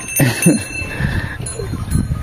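A farm animal calling low, with a brief metallic ringing tone near the start.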